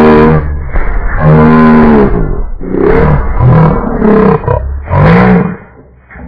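Singing voices played back slowed down, so the sung notes come out deep and drawn out, almost like a roar. About five long bending notes with short breaks between them, dropping away near the end.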